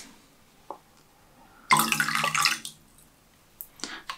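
Water poured from a plastic cup onto a glass pane, splashing and dripping off the glass into a plastic tub below. A faint tick comes early, a louder spell of splashing lasts about a second from a little before halfway, and a few small drips fall near the end.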